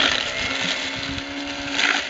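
Garbage disposal motor running steadily, grinding quartered pears into pulp, with grating bursts as the fruit is pushed into the blades near the start and again near the end.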